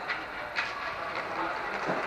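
Inline hockey rink sound in a reverberant air-dome: steady rolling of skate wheels on the rink floor, with about four sharp clacks of hockey sticks striking the puck, roughly half a second apart.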